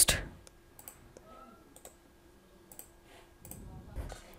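Computer mouse buttons clicking: a few separate, scattered clicks as a link is right-clicked and a menu item chosen.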